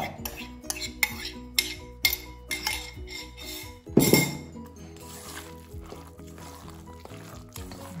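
Utensil clinking and scraping against bowls, two or three sharp clicks a second, as the wet egg, milk and breadcrumb mixture is scraped out onto ground pork in a stainless steel mixing bowl. A louder clatter about four seconds in, then the clicks stop and it goes quieter.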